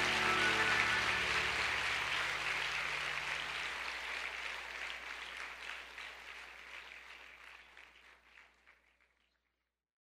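Congregation applauding over soft sustained music, the whole fading out to silence about eight seconds in.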